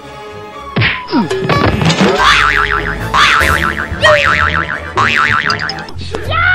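Comic cartoon-style sound effects over background music: about a second in, several quick falling pitch glides, then a fast warbling, wobbling tone that restarts about once a second, four times.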